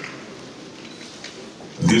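Low murmur of scattered audience voices in a large hall, then near the end the team's routine music starts abruptly and loudly, with shouting and cheering from the crowd.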